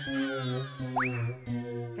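Comedy background music with sustained synth notes and cartoon-style sound effects: a pitch glide sliding down at the start and a quick upward swoop about a second in.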